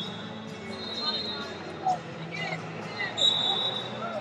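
Wrestling shoes squeaking on the mat in two high-pitched squeals, about a second in and again near the end, over arena background voices and hum, with a couple of sharp thuds from the bout.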